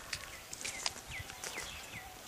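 Faint outdoor ambience with a small bird's short chirps, each note falling in pitch, about four of them roughly half a second apart, among light scattered clicks.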